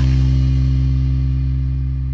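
Background music: one held chord that slowly fades.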